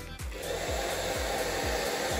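Handheld hair dryer running, its airflow blowing out two birthday candles. A steady rushing noise starts a moment in and holds, over a light background music beat.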